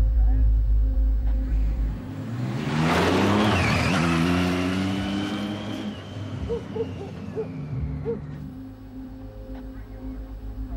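A car races past on a wet road about three seconds in: a rising engine rev and a rush of tyre noise, then the sound falls away as it recedes. A deep pulsing music beat runs underneath for the first two seconds.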